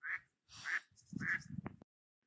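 A duck quacking three times in quick succession.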